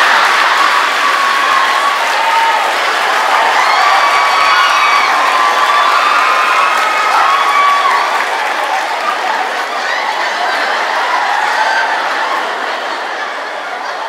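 Large theatre audience laughing, applauding and cheering at a stand-up joke, with scattered whoops. The reaction is loudest at first and slowly dies down over the last several seconds.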